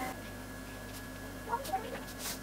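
Felt-tip marker rubbing and squeaking faintly on paper as a mane is coloured in, with a short cluster of small squeaks about one and a half seconds in.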